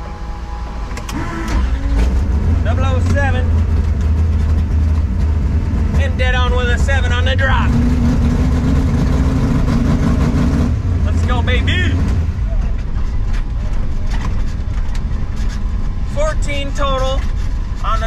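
Drag-racing 1964 Chevelle's engine heard from inside the cabin at full throttle for about ten seconds through a quarter-mile pass, its pitch climbing near the end. The driver then lifts off and it drops back to a lower running note.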